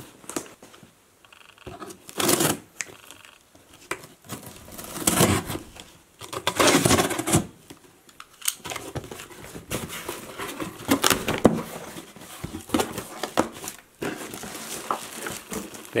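A taped cardboard shipping box being opened by hand: packing tape ripped off and the cardboard flaps pulled open, in a series of short noisy rips and rustles.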